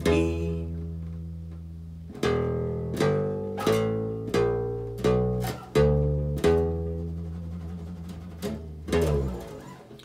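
Hollow-body electric bass guitar playing single notes of the E blues scale: one held note, then seven plucked notes about 0.7 s apart, the last ringing out and fading.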